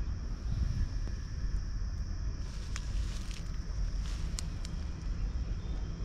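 Wind buffeting the microphone: a low, uneven rumble, with a few faint ticks.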